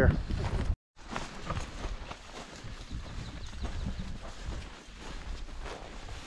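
Footsteps through dry grass and dirt on a slope: irregular rustling, crunching steps with low thumps, starting about a second in after a brief silence.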